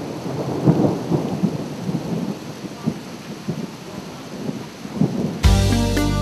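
Irregular low rumbling noise with uneven gusts and swells. About five and a half seconds in, a TV weather-forecast jingle starts abruptly.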